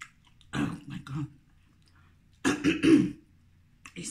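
A woman coughing and clearing her throat in two short bouts, the second louder, about half a second in and again about two and a half seconds in, while eating a spice-seasoned corn cob.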